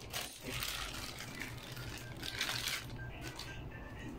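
Faint rustling and handling noises over a low, steady hum, with two soft swells, about half a second in and again past the two-second mark.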